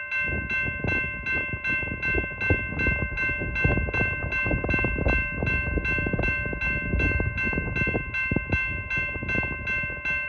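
A railroad crossing bell rings steadily about three times a second. Under it a slow-moving intermodal freight train's cars rumble and clank, with irregular knocks from wheels and couplers.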